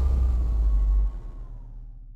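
Cinematic logo sting sound effect: a deep bass rumble with a faint, slowly falling tone, dropping sharply about a second in and then fading away.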